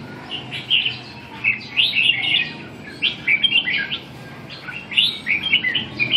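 Caged red-whiskered bulbuls singing: short, rapid warbled phrases in four bursts, with brief pauses between them.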